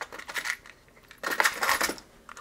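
Small hard parts clinking and rattling in a container as electronic components are rummaged through. There is a short cluster of clinks early on and a denser, louder rattle in the second half.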